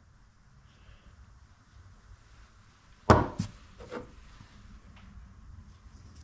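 Steel milling cutters being handled: one sharp knock about three seconds in, then a few lighter clunks, with soft rubbing of hands on the cutter in between.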